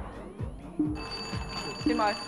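Game-show answer bell ringing with a steady electronic tone, starting about a second in, over background music with repeated falling sweeps: a contestant has pressed the bell to claim the right to answer.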